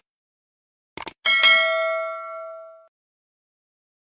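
Subscribe-button animation sound effects: a quick double mouse click about a second in, then a bright notification-bell ding that rings out and fades over about a second and a half.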